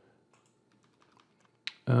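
Faint clicks at a computer: a run of light mouse and keyboard clicks, then one sharper click about a second and a half in.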